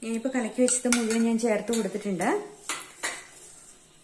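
Metal spoon scraping and clinking against a stainless steel pot while stirring soup: a squeaky scrape that holds its pitch for about two seconds and then dips, with several sharp clinks.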